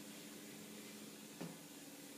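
Faint steady hum of ship machinery in the engine spaces, a few low tones over a soft hiss, with one light knock about a second and a half in.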